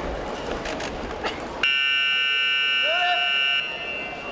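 Electronic judo timer buzzer sounding one steady, loud tone for about two seconds and then cutting off suddenly, signalling a stop in the contest. Before it, the hall is filled with voices and a few thumps on the mat; a voice calls out briefly over the end of the buzzer.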